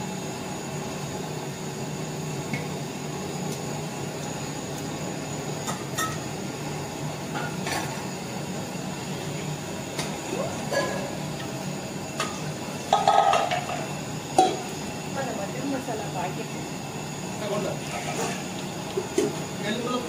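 Aluminium cooking vessels clinking and clanking against each other a handful of times, loudest about thirteen seconds in, as masala paste is scraped from one vessel into a large pot, over a steady low hum.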